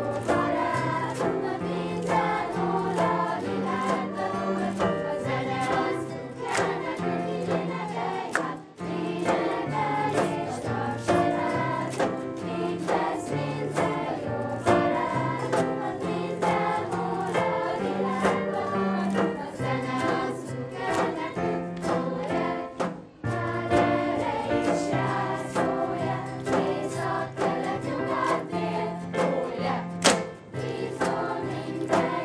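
Children's choir singing a song with acoustic guitar accompaniment. The music pauses briefly twice, about nine and twenty-three seconds in.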